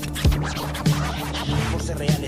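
Hip-hop instrumental beat with turntable scratching, a steady kick-and-snare pulse about every 0.6 s and no rapping.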